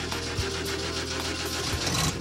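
An old car's engine idling steadily just after starting, with a low even hum.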